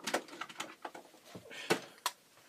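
A handful of light clicks and knocks, spaced irregularly, the loudest near the end: hard plastic action figures being picked up and handled.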